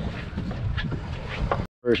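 Low wind and water noise on an open boat on the water, with some rumble of wind on the microphone. Near the end it cuts out abruptly, and then a man's voice starts.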